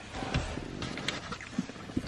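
Close-up mouth sounds of chewing a fried chicken sandwich, with a few short crackles about half a second and a second in and a low thump near the start.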